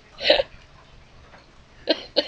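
A woman laughing, two short breathy bursts: one about a quarter second in and one near the end.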